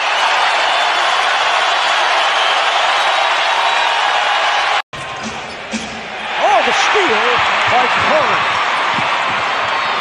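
Basketball arena crowd noise that cuts out abruptly for an instant about five seconds in. It then returns with game sounds on the court, including a run of short, rising-and-falling sneaker squeaks on the hardwood.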